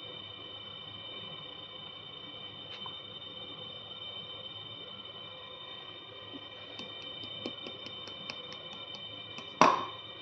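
Quiet handling on a kitchen counter over a steady faint high-pitched whine: a run of light clicks in the second half, then one sharp knock shortly before the end.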